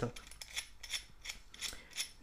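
Light, irregular clicks and scrapes of a plastic washbasin drain fitting with a metal strainer grate being handled and unscrewed by hand.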